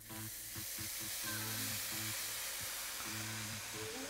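White wine poured into a hot pan of arborio rice, sizzling and hissing steadily from the moment it hits the pan. Background music with low held notes plays underneath.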